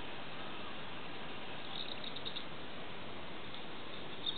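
Steady outdoor background hiss, with a few faint, high chirps of small birds about two seconds in and again near the end.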